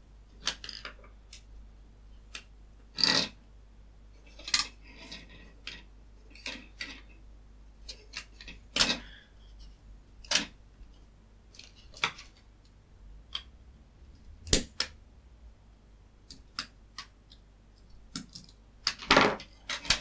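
Plastic casing and circuit board of a plug-in ultrasonic insect repeller being handled during a teardown: scattered sharp clicks, taps and light scrapes a second or two apart, with a busier cluster near the end as the board and transducer are lifted out.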